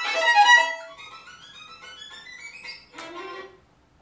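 Violin playing fast, separated staccato notes, the up-bow staccato being practised: a loud rapid run first, then a quieter run climbing steadily in pitch, ending on one short note about three seconds in.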